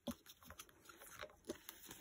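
Faint rustles and a few light clicks of polymer banknotes being handled and picked up by hand.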